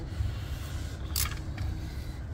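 Ratcheting wrench giving short tightening pulls on a plug bolt of a Ford Mustang's rear differential housing, with one sharp click about a second in over a low rumble. This is the final snugging of the plug after the differential fluid refill.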